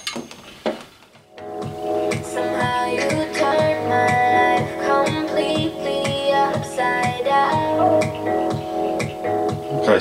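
Guitar-led music with a steady beat played through a flat-screen TV's built-in speakers and picked up in the room, starting about a second and a half in after a couple of faint clicks.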